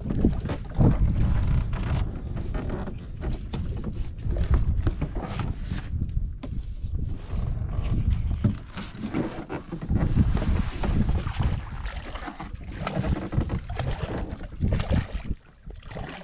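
Wind buffeting the microphone in uneven gusts, with intermittent splashing as a hooked fish thrashes at the water's surface beside the boat.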